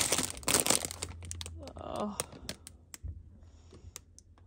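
Cellophane ornament bag crinkling as a wrapped glass fish ornament is picked up and turned in the hand. The crinkling is densest for the first second and a half, then thins to scattered crackles and dies away near the end.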